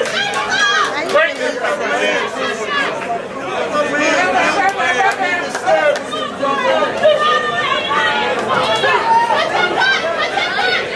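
Spectators' voices talking and shouting over one another in a dense, continuous babble.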